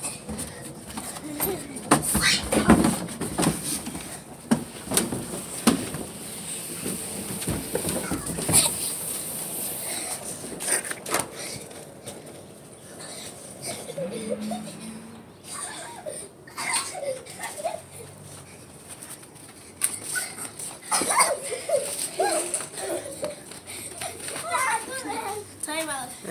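Indistinct children's voices, with scattered sharp knocks and clicks that are thickest in the first several seconds.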